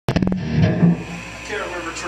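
Live rock band on electric guitars and drums, with a quick run of sharp hits at the very start and a voice coming in near the end.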